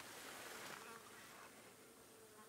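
Near silence, with a faint, steady insect buzz.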